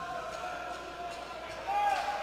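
Roller hockey rink sound in a hall: crowd voices with a few light knocks of sticks and ball, and a louder call near the end.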